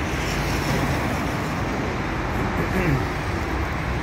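Steady road traffic noise from cars passing on a busy city road, an even rushing hum with no distinct events.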